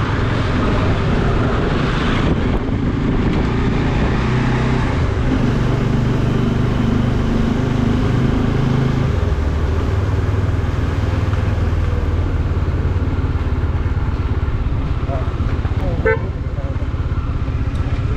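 Bajaj Dominar 400's single-cylinder engine running steadily while the motorcycle is ridden, with road and wind noise around it. Its note changes about halfway through and then holds lower and steadier.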